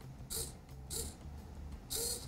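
Small hobby servo on an XRP robot driving its arm, heard as three brief whirs of its motor and gear train, the last near the end as the arm swings. The servo is being run by the installation verification test.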